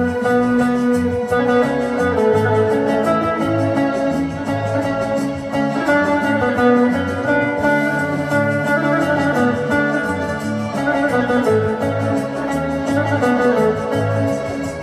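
Bağlama (saz) playing a flowing melody line, plucked with a plectrum, over a sustained organ-like keyboard accompaniment with a moving bass part.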